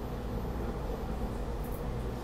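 Steady low hum and hiss inside a Market-Frankford Line rapid-transit car standing at a station with its doors open.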